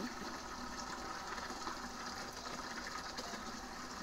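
Water pouring steadily from a hose into a plastic bucket as it fills.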